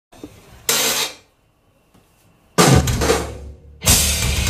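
Live rock band playing stop-start accents: a short crash hit about a second in, silence, then a heavier full-band hit with drum kit and cymbals that rings out, before the band launches into the song just before the end.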